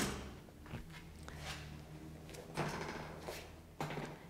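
Faint soft knocks and rustling from a Pilates reformer being handled while its springs are changed and the carriage is moved, over a low steady room hum.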